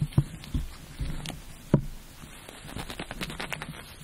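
A dove's wing being cut off at the joint: a few soft knocks, then a quick run of small crackling clicks near the end as the wing comes free.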